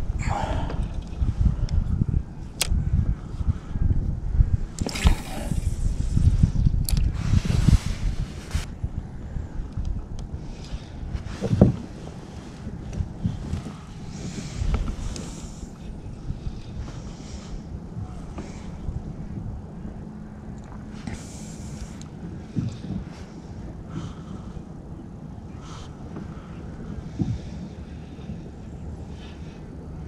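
Wind buffeting the microphone in uneven low rumbles, heaviest in the first eight seconds and easing after, with a few sharp clicks and knocks from fishing gear being handled on the kayak.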